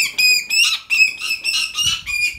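An imprinted bird of prey, Phineas, chattering with a fast run of short, high-pitched calls, about five a second, as food is brought to him: food-begging.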